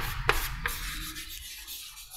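Chalk writing on a chalkboard: a few sharp taps as the chalk meets the board, then scratchy strokes as letters are drawn, fading toward the end.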